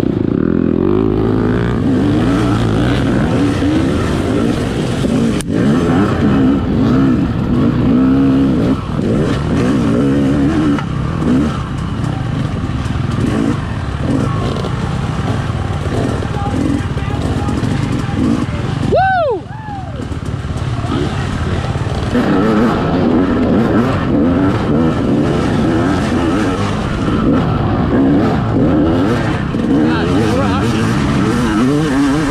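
Dirt bike engine heard from the bike itself under hard throttle in an off-road race, its pitch constantly rising and falling as the rider accelerates and backs off, with other bikes running close by. A little after two-thirds of the way through, the engine note drops sharply for a moment before picking back up.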